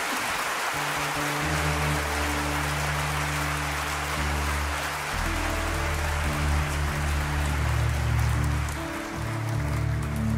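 Audience applause dying away as low, sustained accordion notes start beneath it. A deeper held note joins about five seconds in.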